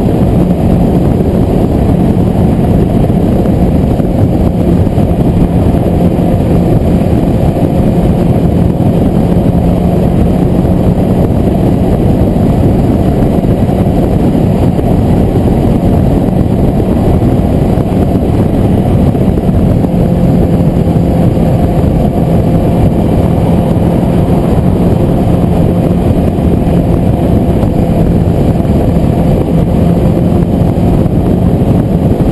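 Sport motorcycle cruising at steady motorway speed, heard from its onboard camera: a constant engine note held at even revs under loud, steady wind and road rush.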